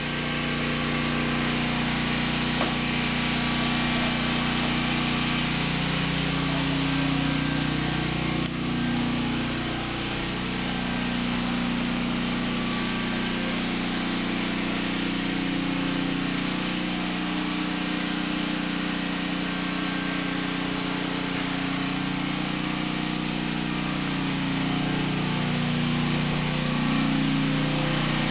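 Portable generator engine running with a steady drone.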